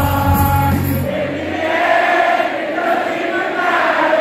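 Electronic dance music from a DJ set, played loud over a venue sound system. About a second in the bass and beat drop out into a breakdown of held, pitched chords.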